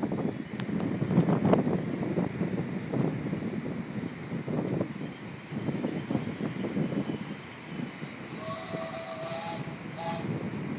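1/3-scale steam locomotive working, with a whistle blast of over a second about eight seconds in, running into a short higher note. Under it is an uneven rumbling noise throughout.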